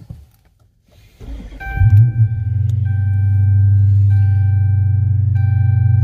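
2013 Dodge Charger R/T's 5.7-litre HEMI V8 starting about a second in, flaring briefly, then settling into a steady idle heard from inside the cabin. An electronic warning chime sounds alongside it, steady with short breaks.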